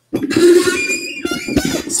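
A loud, drawn-out squeak from a moving part that has not been sprayed with lubricant, starting suddenly. A laugh follows at the very end.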